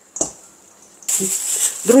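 Hands kneading a stiff dough in a stainless steel bowl, faint, with one short soft sound early on. About a second in a steady hiss sets in, and a woman's voice starts near the end.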